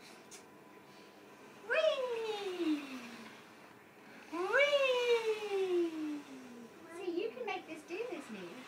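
A toddler's voice giving two long, high cries, each jumping up in pitch and then sliding slowly down, the second following about two and a half seconds after the first; shorter wavering vocal sounds come near the end.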